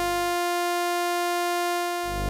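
Electronic synthesizer music from a mobile phone ensemble, made by spinning iPhones and iPods that drive Max software: a steady sustained tone rich in overtones. A deep bass layer under it cuts out about half a second in and comes back at the very end.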